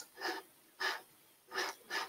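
A person breathing: three short audible breaths a little over half a second apart, with a sharp click at the very start.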